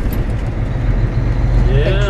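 Semi truck's diesel engine running steadily under way, heard from inside the cab as a continuous low drone. A voice starts near the end.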